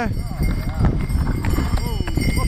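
Hoofbeats of a harnessed horse walking on a snow-covered road as it pulls a sleigh, with the harness sleigh bells jingling.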